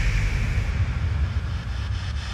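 Electronic dance music at a breakdown between sections: a wash of noise slowly fading over a low bass rumble, with no melody or beat.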